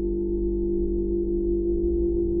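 A steady electronic tone with two low pitches held together, edited in over the ride audio, with a low rumble underneath.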